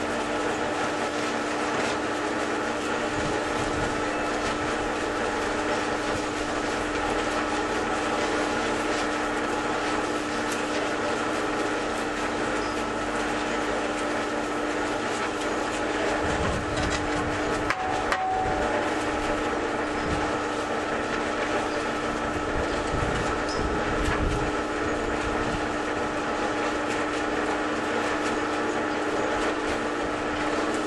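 Barrow cement mixer running, its drum turning with water and sand inside, a steady hum under a continuous mechanical rattle. Shovelfuls of sand are tipped into the turning drum, with heavier churning and a few sharp knocks about two-thirds of the way through.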